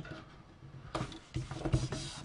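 Hands pressing and smoothing adhesive-backed paper strips onto a card base on a craft mat. Paper rustles and a few soft thumps come in the second half as the palms press down.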